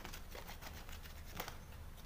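Chopped palm sugar being scraped off a cutting board into a metal basin: a run of light scrapes and small pieces pattering onto the metal, the sharpest tick about one and a half seconds in.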